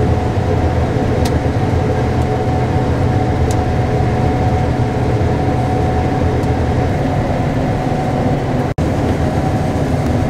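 Combine harvester running steadily under harvesting load, heard inside the cab while unloading grain on the go: a constant deep drone with a thin steady whine over it. It cuts out for an instant near the end.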